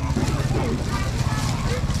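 A motor vehicle engine running, a steady pulsing low hum, under scattered market voices.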